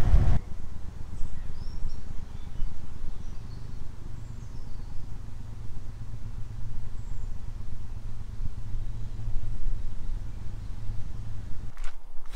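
Steady low rumble of wind and handling noise on a handheld camera carried while jogging, with a few faint bird chirps.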